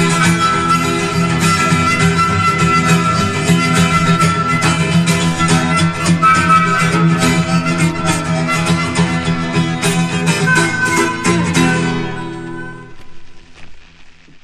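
Instrumental close of an Italian folk ballad: rhythmically strummed acoustic guitar under a held melody line, fading out near the end.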